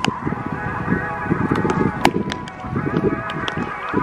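Baseballs smacking into leather gloves during a game of catch, sharp pops at irregular intervals, the loudest about two seconds in, over steady background music.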